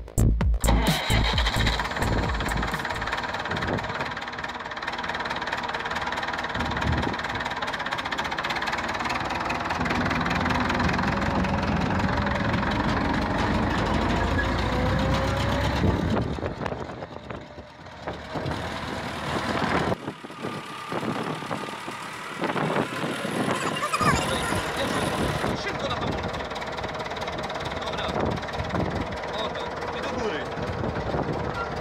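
Massey Ferguson 260 tractor's diesel engine running, its pitch rising and falling as the tractor is driven, with voices in the background.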